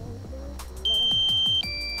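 Electronic warning beeps from the DJI Mavic Pro's low-battery alert: one steady high beep a bit under a second long, then a slightly lower beep starting near the end, over background music.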